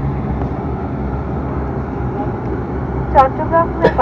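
Turboprop airliner's engines and propeller running on the ground, a steady low drone heard from inside the cabin. A cabin announcement voice comes back in about three seconds in.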